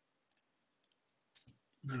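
Computer mouse button clicking: a faint tick, then a quick double-click about a second and a half in.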